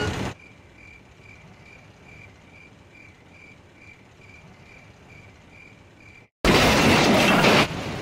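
Night-time railway shed ambience from a film sound-effects track: a quiet background with a faint high chirp repeating evenly about two and a half times a second, like a cricket. After a brief drop-out, a sudden loud rush of noise lasting about a second comes in near the end.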